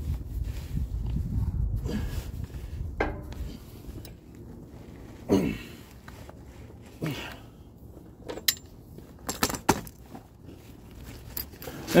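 A man grunting and breathing hard with effort as he heaves on a breaker bar to tighten a semi truck's oil drain plug, over a low rustling of his body and clothes. Several sharp clicks and knocks follow in the second half.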